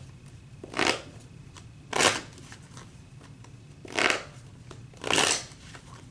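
A deck of tarot cards being shuffled by hand: four short bursts of card noise, about a second or two apart.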